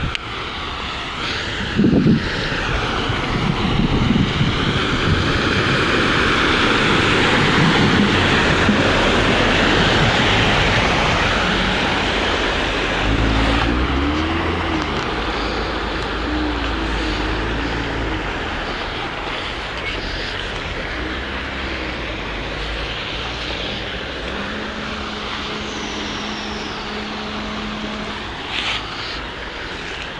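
Cars driving through a flooded street, their tyres pushing a rushing spray through standing water. The loudest pass swells and fades about five to ten seconds in, followed by low engine rumble and a steady low engine hum near the end.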